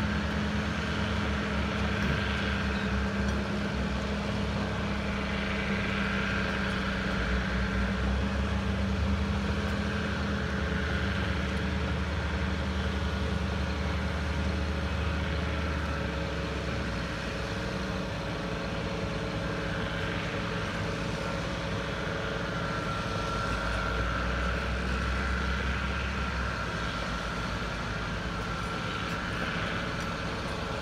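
Diesel engines of a tracked bulldozer and a wheel loader working on sand: a steady low drone whose pitch shifts a few times as the engines rev up and settle.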